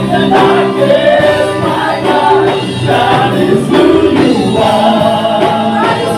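A live church worship band playing a contemporary worship song, with several singers on microphones singing the melody together over the band.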